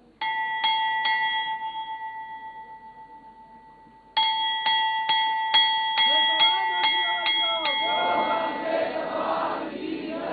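Hanging temple bell struck three times in quick succession and left ringing, fading over about three seconds. It is then rung again about twice a second, around nine strikes, while a group of voices rises and shouts over it from about six seconds in.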